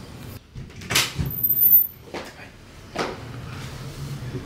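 Wooden wardrobe door being handled, with a sharp knock about a second in and another near three seconds.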